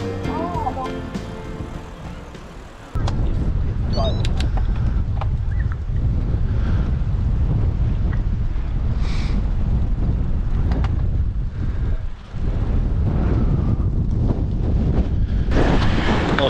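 Background music fading out over the first few seconds, then, after a sudden cut, a loud, steady low rumble of wind buffeting the camera microphone that dips briefly near the end.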